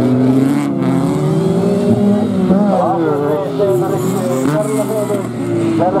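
Autocross special race cars racing on a dirt track, their engines revving up and falling back repeatedly, several engine notes overlapping.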